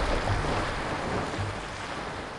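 Water splashing and spraying as a hooked tarpon leaps and thrashes at the surface: a steady wash of spray that slowly fades.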